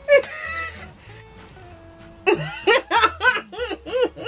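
Two women laughing: a short vocal burst right at the start, then a run of 'ha-ha' laughter at about four pulses a second from about halfway through, over soft background music.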